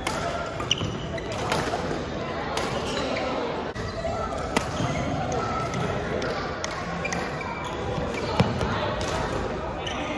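Badminton racquets striking a shuttlecock in a doubles rally: sharp hits roughly once a second, over a hum of voices in a large gym hall.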